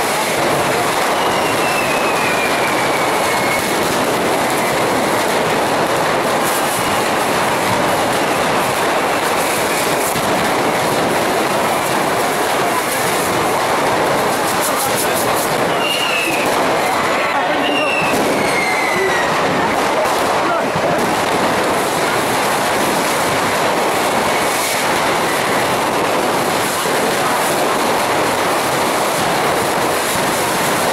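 The dense, unbroken hiss and crackle of many festival fireworks rockets being fired together at street level, with a few short falling whistles.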